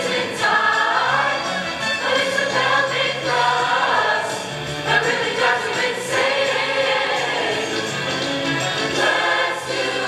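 A large mixed choir of teenage voices singing a rock-and-roll number together over instrumental accompaniment with a held bass line.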